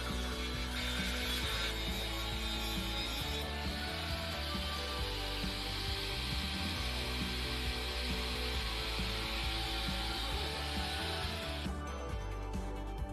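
Background music over the hiss of an angle grinder grinding a metal strip; the grinding stops abruptly near the end.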